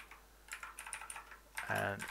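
Typing on a computer keyboard: a quick run of keystrokes starting about half a second in, followed by a short vocal sound near the end.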